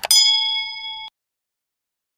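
A notification-bell chime sound effect: one bright ding that rings on a few steady tones for about a second, then cuts off abruptly.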